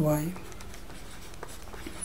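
Stylus writing on a digital drawing tablet: faint scratching with a few light taps as handwritten maths is drawn, the spoken word 'y' at the start.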